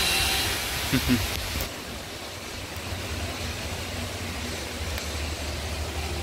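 Heavy rain, with the wash of a van's tyres through water on a flooded road, heard as a steady hiss. The hiss drops away suddenly a little under two seconds in, leaving a low rumble.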